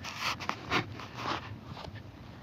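Three or four short rustling scrapes in quick succession over a low steady background.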